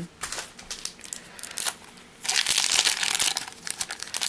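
A foil Pokémon booster pack wrapper crinkling as it is twisted and torn open, starting about two seconds in after a few faint clicks.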